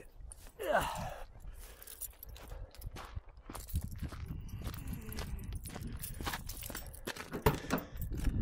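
Wind buffeting the microphone as a low, uneven rumble, with scattered knocks and rustles from the camera being handled and moved.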